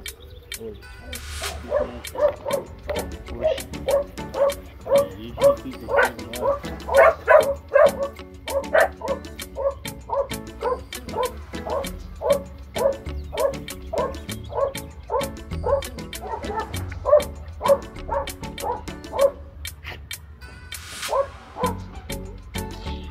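A seven-week-old pit bull puppy yelping over and over, about two short cries a second, while it is held with its mouth pried open, stopping shortly before the end.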